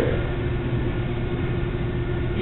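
Steady low rumble and haze of room background noise, with a faint constant hum throughout.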